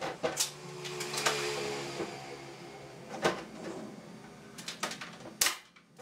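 A series of sharp knocks and clicks at uneven intervals, the loudest near the end. One about a second in rings on briefly.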